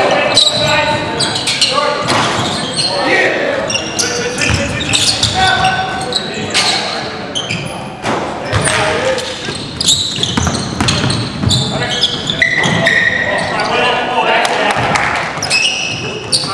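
A basketball bouncing repeatedly on a hardwood gym floor during play, ringing in a large echoing hall, with players' voices calling out over it.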